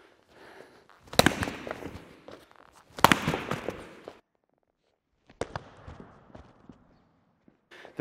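Two sharp smacks of gloved Wing Chun strikes landing on a training partner, about two seconds apart, each followed by about a second of shuffling footwork on a mat. A single lighter knock follows.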